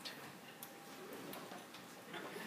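Quiet room tone with a few faint, sharp clicks.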